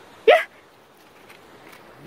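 A single short, loud shout of "yeah" about a third of a second in, then only a quiet outdoor background.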